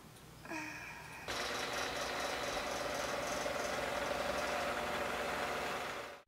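A steady mechanical buzz starts just over a second in and holds level to the end, after a brief pitched sound about half a second in.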